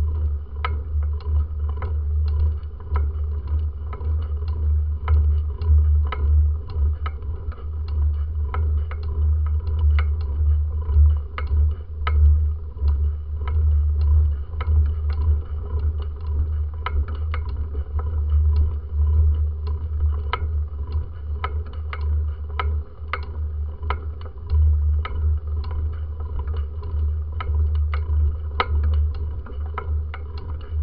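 Bicycle climbing a steep street, heard through a camera mounted on the bike: a heavy, uneven low rumble of wind and road vibration on the microphone, with a sharp click repeating about two to three times a second.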